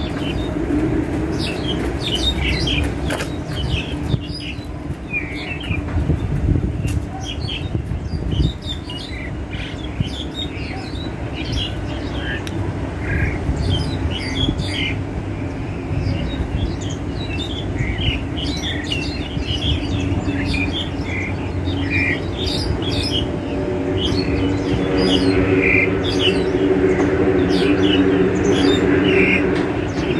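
A wild starling sings in a rapid run of short chirps, squeaks and squawks, call after call. Under it is a steady low rumble that grows louder over the last several seconds.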